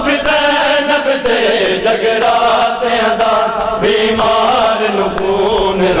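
A group of men chanting a Punjabi noha (Shia lament) together, their voices holding long lines that waver and slide in pitch.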